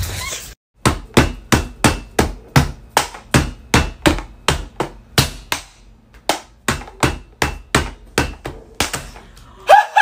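A hand slapping a tabletop over and over, about three times a second, as a drumroll, ending in loud shrieks from two people as a raw egg is smashed on the table.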